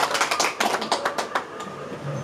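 A small group of people clapping, quick irregular claps that die away about a second and a half in.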